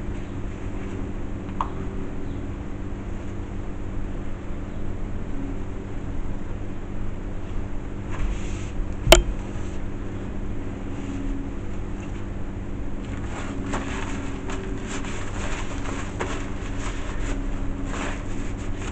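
A steady low mechanical hum, with soft rustling of paper towels being laid out and smoothed by gloved hands, and one sharp click about halfway through.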